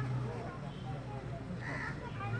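Birds calling outdoors: scattered short chirps and one louder call near the end, over a steady low hum.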